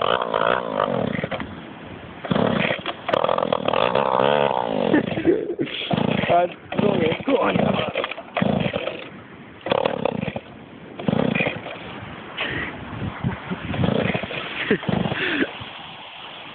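Indistinct voices talking on and off, with no clear words.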